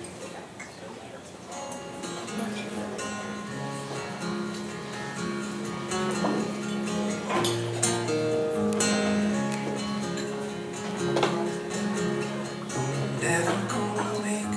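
Solo acoustic guitar playing a slow song intro: held, ringing notes begin about two seconds in, with a few strums spread through.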